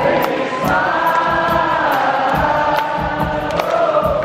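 Live rock band and orchestra playing with a large crowd of voices singing along together in long held notes, over a steady beat.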